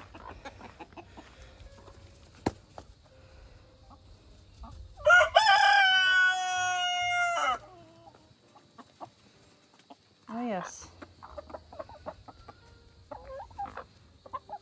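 A rooster crows once about five seconds in, a long call that rises and then holds a drawn-out note before breaking off. The flock of chickens clucks and scratches around it, with another short call later.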